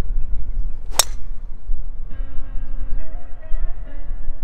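A driver striking a golf ball off the tee: one sharp crack about a second in, over a steady low rumble. Background music comes in about halfway.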